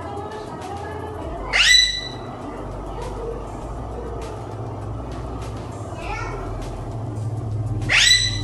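Alexandrine parakeet giving one loud, short, shrill squawk about one and a half seconds in, then a fainter call near six seconds.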